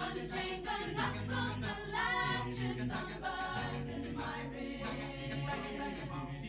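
Mixed-voice a cappella choir singing held chords, with low bass notes sustained under the upper voices.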